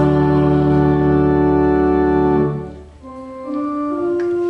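Church organ holding a full final chord, released about two and a half seconds in. A few softer single held notes follow.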